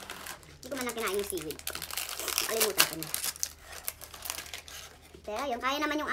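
Plastic snack packaging crinkling and crackling as a tray of seaweed snack is unwrapped and opened, with brief high-pitched talk near the end.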